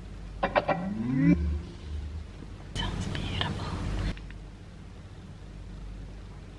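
JBL light-up Bluetooth speaker sounding an electronic cue: a short rising sweep followed by a couple of low bass notes.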